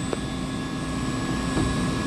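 Steady machinery noise of a chiller plant room, a running water chiller and its pumps, with several constant tones under a broad hum. A faint click comes just after the start.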